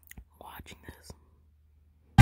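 Faint close-microphone whispering with a few small mouth clicks in the first second, then near silence.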